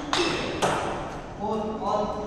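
Table tennis ball struck and bouncing: two sharp clicks about half a second apart, followed near the end by a brief voiced call from a player.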